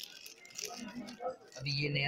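Light rattling and rustling as a small piece of imitation gold jewellery is handled inside a clear plastic packet, with a man's voice starting near the end.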